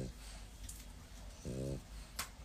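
French bulldog snoring or grunting as it sleeps: short, low sounds, one with each breath, two in this stretch, with a few faint ticks between.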